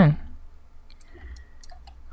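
A few faint, scattered clicks from computer input (mouse and keys) over a low steady hum.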